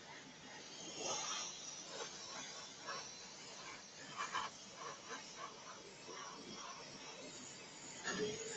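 Faint steady hiss of an AirCobra airbrush spraying varnish.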